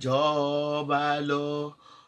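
A woman singing unaccompanied in a chant-like style, holding one long note that steps in pitch a couple of times and breaks off near the end.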